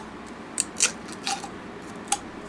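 Cap of a small amber supplement bottle being worked open by hand, with a few short, scratchy clicks and crinkles.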